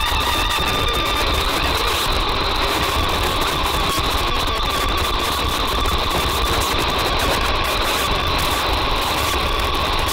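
Live improvising jazz orchestra playing a dense noise texture: two steady high held tones over constant crackle and a low rumble, with no clear beat or melody.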